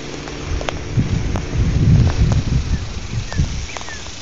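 Low rumbling wind buffeting the microphone over the steady hum of a vehicle's engine and road noise. The rumble swells about two seconds in.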